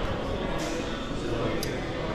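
Indistinct chatter of several people talking at once, with a short high click near the end.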